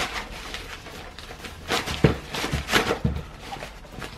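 Camp stove gear being handled and packed into its carry bag: rustling, with a handful of short soft knocks in the second half.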